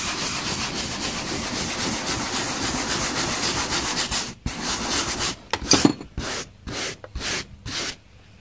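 Hand brush scrubbing crumbling old foam backing off a headliner board: fast continuous scrubbing, a brief break about four seconds in, then separate strokes about two a second.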